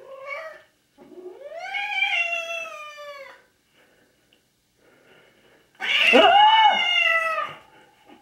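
A domestic cat yowling at a person, a hostile drawn-out caterwaul. A short call comes at the very start, then a long call from about a second in that rises and falls in pitch. The loudest, wavering yowl comes near six seconds.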